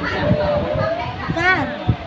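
Voices talking over one another in a busy room, with children's high voices among them and a brief high-pitched child's shout about one and a half seconds in.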